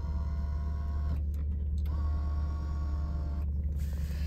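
A small electric motor in a 1998 Lexus LS400's cabin runs twice with a steady whir, about a second each with a short pause between, as a powered feature is worked from its switch.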